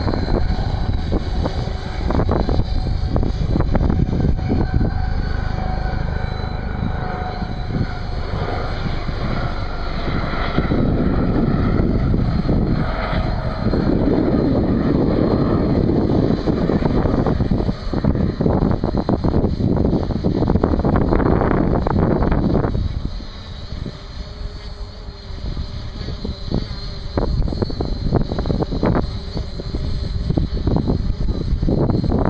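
Wind buffeting the microphone in gusts, easing about 23 seconds in, over the faint hum of a quadrotor's propellers hovering high overhead, its pitch wavering slightly.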